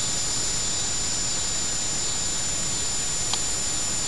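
Steady hiss of background noise with a thin, constant high-pitched whine running through it, and one faint tick about three seconds in.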